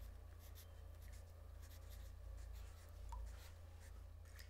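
Pencil scratching on notebook paper in short, quick strokes as someone writes, over a faint steady low hum.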